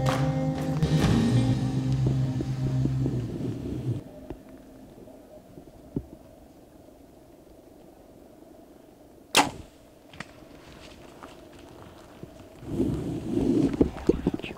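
Music plays and stops about four seconds in. After a quiet stretch with a small click, a single sharp bow shot cracks about nine seconds in as an arrow is loosed at a bull elk. Near the end a low rush of sound swells up.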